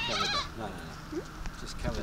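A goat bleating once, a high quavering call that ends about half a second in, with people talking.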